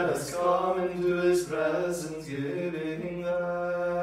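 Liturgical chant: voices singing prayer text on a steady reciting note, the words sung continuously without a break.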